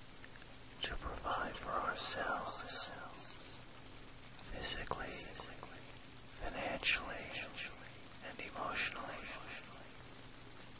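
Soft whispering voice in four short phrases over a steady recorded rain sound, with a faint low steady tone of the isochronic beat beneath.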